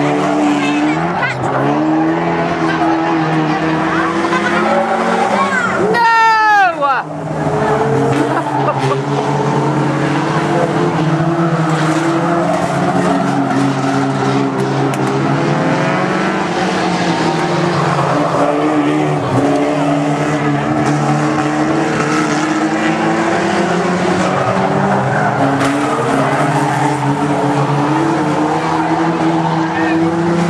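Several banger racing cars' engines running and revving as they lap the oval. About six seconds in, one engine's pitch sweeps sharply downward; this is the loudest moment.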